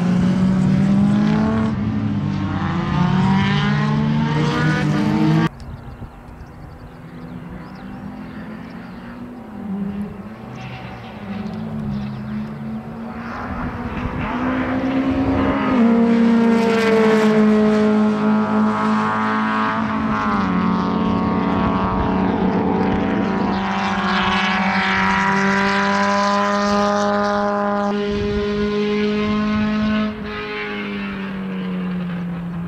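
Škoda 130 LR race car's four-cylinder engine driven hard on the circuit, its pitch climbing and stepping as it goes up and down through the gears. About five seconds in it falls abruptly to a quieter, more distant note, then builds louder again as the car comes close.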